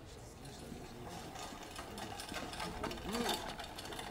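A rapid rattling clatter that builds and grows louder, over low murmuring men's voices.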